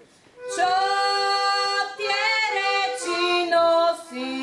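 A girl singing a Slovak folk song solo and unaccompanied, in long held notes with a short rising turn in the middle. She comes in after a brief pause at the start.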